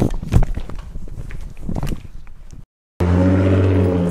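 Camera handling and clothing rustle with a few knocks. After a cut about three seconds in, a Mazda RX-8's rotary engine idles steadily.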